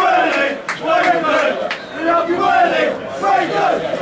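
Football supporters chanting together in great voice, a loud, rhythmic sung chant from many voices at once.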